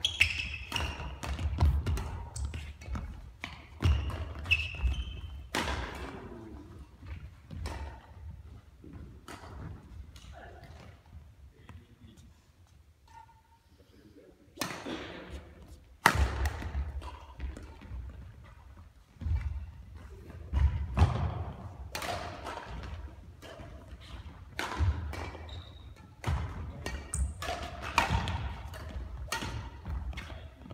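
Badminton rallies in a large sports hall: sharp racket strikes on the shuttlecock, with players' footsteps thudding and shoes squeaking on the court floor, all echoing in the hall. There is a lull of a few seconds about a third of the way in, then play picks up again with another quick run of hits and footwork.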